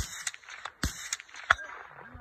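Rifle shots on a range: three sharp reports, one at the start, one just under a second in, and the loudest about a second and a half in, with smaller cracks between.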